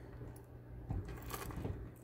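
Faint handling noise of jewelry: a few light, scattered clicks and rustles as wire rings and a stone-set chain bracelet are moved about in the hand.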